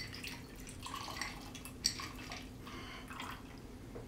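Shaken cocktail being strained from a metal cocktail shaker into a glass: a faint trickle and dripping of liquid, with a sharp clink at the start and another just before two seconds in.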